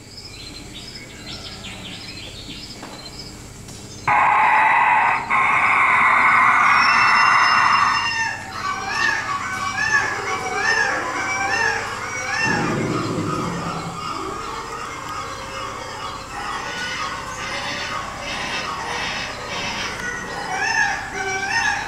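Exhibit soundscape playing bird calls. A loud rushing hiss runs for about four seconds, then short chirping calls rise and fall over and over, with a brief low rumble partway through.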